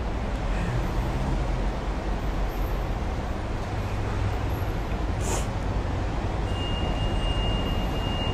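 Steady low rumble and hiss of a car's cabin. A short sniff or breath comes about five seconds in, and a thin steady high tone begins near the end.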